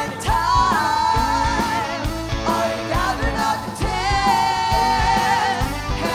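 Live rock band playing, with a woman singing lead in long held, wavering notes over acoustic and electric guitars and a steady beat.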